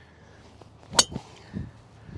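Srixon ZX5 Mark II titanium driver striking a golf ball off the tee: one sharp strike about a second in. The ball was caught off the toe, a mishit.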